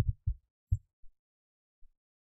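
Computer keyboard keys being pressed while digits are typed, picked up as dull low thuds: three in the first second, then two fainter ones.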